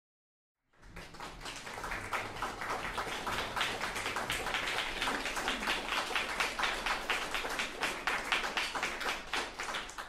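Small audience applauding, dense overlapping hand claps that start about a second in and hold steady before dying away at the end.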